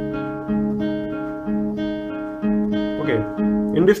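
Steel-string acoustic guitar fingerpicked as a slow arpeggio on a barred C-sharp suspended-second chord (C-sharp minor with the middle finger lifted): single strings plucked in the pattern 5-4-3-4, then 2-3-4 repeated, each note ringing over the next in a steady even rhythm.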